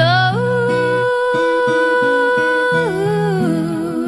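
A love song: a voice holds one long note, sliding up into it at the start and dropping away near the end, over acoustic guitar.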